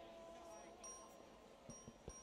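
Faint chiming tones: short high pings recurring about every half second over a soft held lower note, with a couple of soft low knocks near the end.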